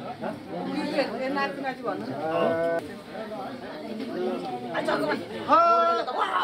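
Several people's voices overlapping: laughter and exclamations, with a few drawn-out vocal calls, the loudest near the end.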